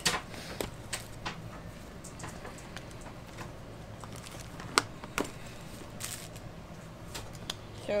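Rustling and scattered light plastic clicks and taps as baby bottles are handled and pulled out of a backpack diaper bag, with two sharper clicks about five seconds in.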